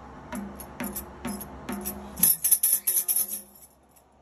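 Handheld tambourine with metal jingles, first struck about twice a second, then shaken in a quick, louder run of jingling for about a second before it stops.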